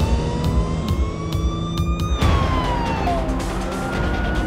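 Police car siren wailing: a slow rise in pitch for about two seconds, a fall, then a new rise near the end. Background music with a steady beat plays underneath.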